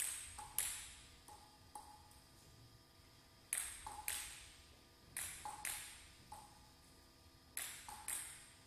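Table tennis ball being bounced between points: about a dozen sharp, irregularly spaced clicks, each with a short, high ring.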